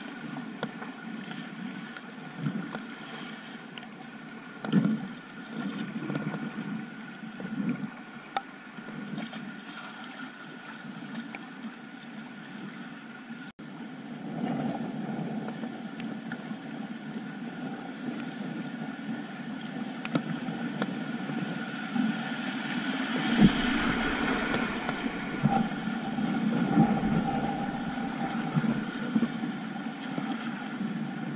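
Whitewater kayak running down a shallow river: flowing water rushing and splashing around the hull, with the splash of paddle strokes. The rush grows louder in the second half as the boat runs into rougher water, with a low rumble joining in near the end.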